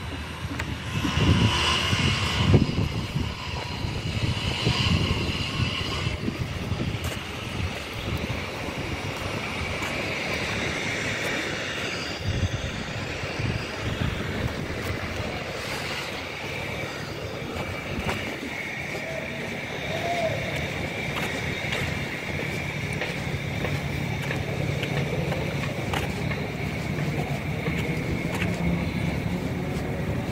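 Steady outdoor city background noise, mostly distant road traffic, with a faint steady high hum running through it and a few scattered light knocks.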